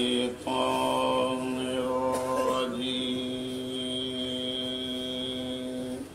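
A man's voice chanting a long, steady held note, after a brief break near the start, that stops abruptly at the end.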